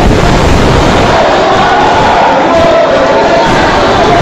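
A crowd of spectators shouting and cheering, loud and continuous, with individual voices calling out over the din, echoing in a sports hall.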